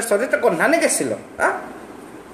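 A man's voice with wide, swooping swings in pitch for about a second, then a short separate vocal sound, then a near pause.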